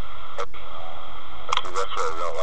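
A voice that sounds as if it comes through a radio or small speaker, its words unclear, over a steady hiss. A sharp click comes about half a second in, and the voice returns near the end.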